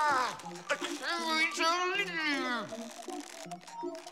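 A cartoon voice making two drawn-out wordless cries that slide down in pitch, the second ending low, over light background music.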